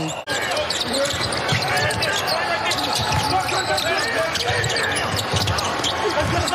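Live basketball game sound: the ball bouncing on the hardwood court, with players calling out and shoes on the floor. There is a brief dropout just after the start, where the footage cuts.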